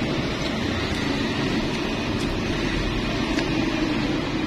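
Steady street traffic noise, an even rumble and hiss with no distinct events.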